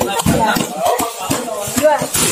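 Music, with voices mixed in.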